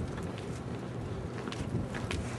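Wind buffeting the microphone in a low, steady rumble, with a few footsteps on pavement.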